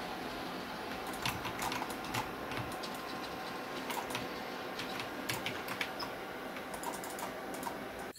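Keys of a backlit gaming keyboard clicking in quick, uneven bursts as they are pressed during play.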